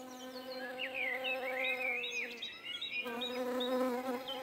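Forest ambience in a cartoon soundtrack: a steady buzzing drone with short, high chirping bird calls over it. The drone stops for a moment a little past the middle, then comes back.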